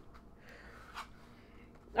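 Faint handling sounds: a soft rustle and then a single light tap about a second in, as a stone is set aside and a tarot card is lifted off a mat.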